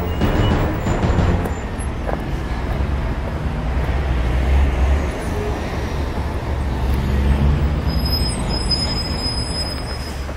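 A vehicle in motion: a steady low rumble under a wash of road noise.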